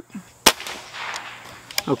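.22-caliber pre-charged pneumatic air rifle firing a single shot: one sharp crack about half a second in. A shorter, quieter click follows near the end.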